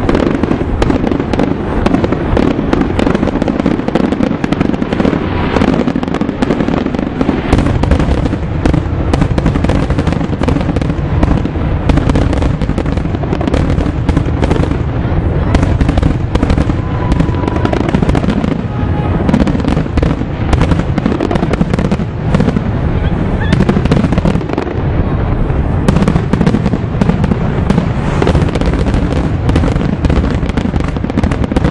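Loud, dense crackling and popping over a low rumble, continuing without a break.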